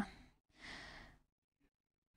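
A man's short breath into a handheld microphone about half a second in, soft and airy, just after the last of his voice fades.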